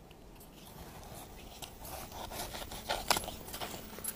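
An Old Hickory knife scraping and prying white coconut meat away from the inside of a split coconut shell. It makes quiet, irregular scrapes and small clicks that grow louder after about the first second.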